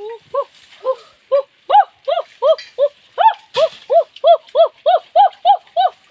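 A rapid series of short hooting calls from a high voice, about three a second, each rising and falling in pitch. The calls keep up an even rhythm and grow slightly louder after the first second or so.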